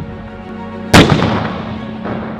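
A single heavy boom about a second in, dying away over the next second, over sustained background music.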